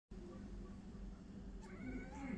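Domestic cat giving a faint meow that starts near the end, over a low steady room hum.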